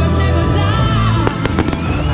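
Fireworks shells bursting, a quick cluster of sharp bangs in the second half, over music with a steady low bass line.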